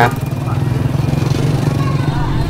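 Small motorbike engine running steadily at low speed close by, a loud, even puttering hum, with a crowd chattering faintly behind it.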